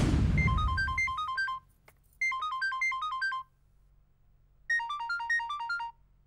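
Phone ringing with an electronic melodic ringtone: three rings, each a quick run of high beeping notes about a second long, separated by short silent pauses. The tail of the film's background music fades out just before the first ring.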